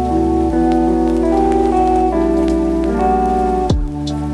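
Soft background music of sustained chords that change every second or two, with the patter of rain and falling raindrops laid over it. Near the end there is a quick downward swoop.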